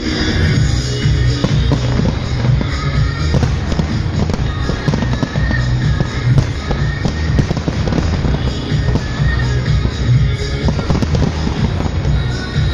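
Fireworks bursting and crackling in a rapid string of bangs, over loud music with heavy bass.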